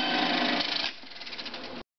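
The closing music of an old film soundtrack ends about a second in. A faint, fast, even mechanical rattle from the Fairchild film player follows, then the sound cuts off abruptly just before the end.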